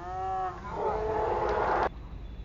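Shouting in celebration of a goal: one long yell, then several voices yelling together, cut off suddenly near the end.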